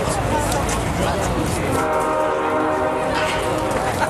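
A horn sounds a long, steady chord of several notes starting about two seconds in, over a low rumble and crowd chatter.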